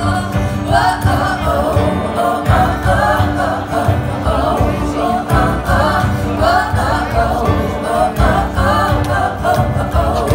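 Live pop band performance: several women singing together in harmony over band accompaniment with a steady low beat, heard from the audience in a concert hall.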